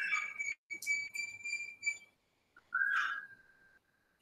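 High whistled notes: several short notes on one pitch in the first two seconds, then a single lower, longer note about three seconds in.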